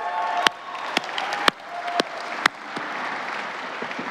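Audience applauding in a large hall, with a few loud single claps close by over the first half and a few short shouts; the applause dies down near the end.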